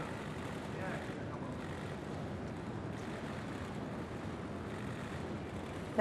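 Steady outdoor street ambience from a live broadcast microphone, an even hiss with faint distant voices about a second in.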